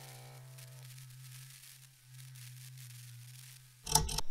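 Intro sting: a low electronic drone, rich at first, whose upper tones die away within the first second, leaving a steady low hum that stops shortly before the end.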